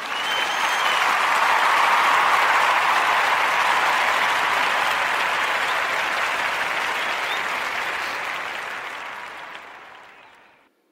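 Audience applause that swells in and then slowly fades out.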